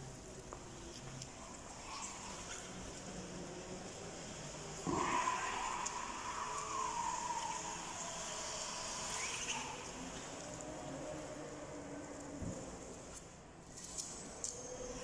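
Linde E50 electric forklift driving and turning, with a high squeal that starts suddenly about five seconds in and wavers in pitch for several seconds before fading.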